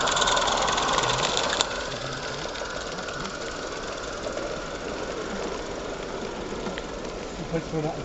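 Small live-steam garden-railway locomotive passing close: rapid exhaust chuffing and steam hiss, loudest in the first second and a half, then quieter and steady as the train runs away.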